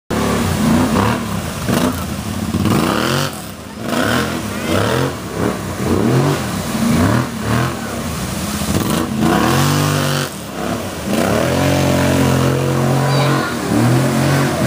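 Kawasaki Brute Force ATV engine revving up and down in repeated surges, about once a second, as it ploughs through a shallow creek, with water splashing and spraying from the tyres. The engine holds a steadier pitch near the end.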